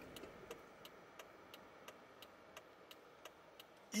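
Car turn-signal indicator ticking faintly inside the cabin, an even click about three times a second.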